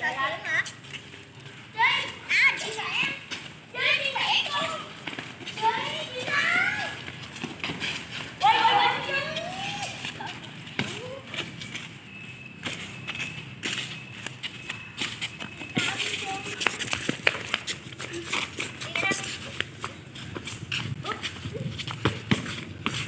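Children talking and shouting while they play football, with short knocks of the ball being kicked and feet scuffing, the knocks coming thicker in the second half.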